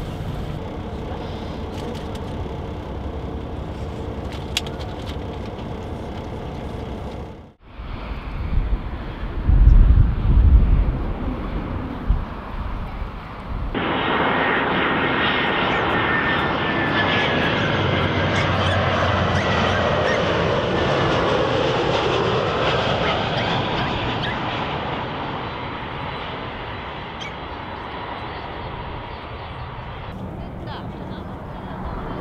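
A StarFlyer Airbus A320 jet airliner on landing approach passing low overhead: its engine roar comes in suddenly about halfway through, holds loud with a faint falling whine, and fades toward the end. Before it comes a steady bus engine hum inside the cabin, cut off after about seven seconds, then a few loud low rumbles.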